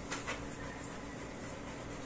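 Steady room tone, a low even hiss, with two short rustles right after the start.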